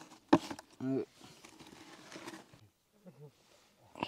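A single sharp click, then faint rustling, as a rope is being tied to the handle of a thin plastic bucket.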